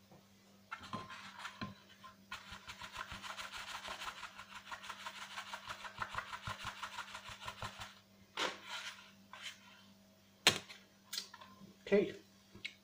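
Gold pan of wet paydirt being shaken: sand and gravel rattling and scraping against the plastic pan in a fast, even rhythm. This is followed by a few scattered clicks and one sharp knock.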